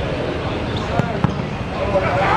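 A football struck hard in a free kick: a sharp thump about a second in, followed a moment later by a second thump, over players' and onlookers' voices.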